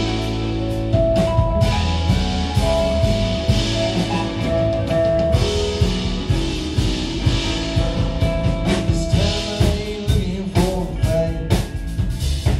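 Rock band playing live: two electric guitars, keyboards and a drum kit, with held melody notes over a steady beat.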